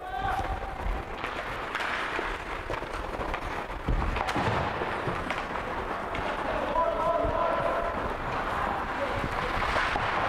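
Ice hockey game sounds in a rink: a steady noisy din of play with indistinct spectator voices, and one sharp knock about four seconds in. Voices rise briefly about seven seconds in.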